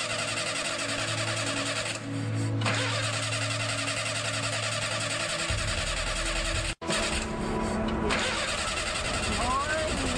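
A car's starter cranking the engine over in several long stretches with short breaks, and the engine never catching: a car that won't start. Music plays underneath.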